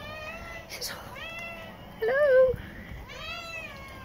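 A cat meowing four times, each an arching call about half a second long, roughly a second apart; the third is lower and the loudest.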